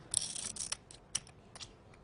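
Poker chips clicking together as a player handles them at the table: a short clatter just after the start, then a few separate clicks.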